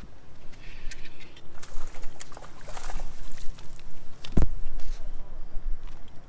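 Angler bringing a hooked fish to the boat: scattered clicks and a short rush of water-like noise, then a single sharp knock a little over four seconds in, as the landing net is taken up.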